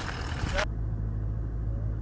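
Outdoor wind and road-side noise that cuts off suddenly about a third of the way in, giving way to a steady low hum inside a car cabin.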